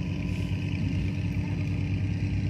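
A steady, low engine drone with a fast, even throb.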